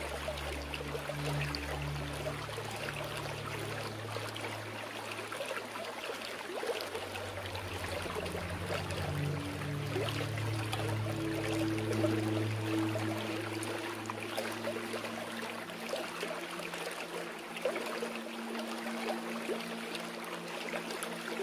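Steady flowing water with a soft, slow piano track underneath, its low notes held and changing every few seconds.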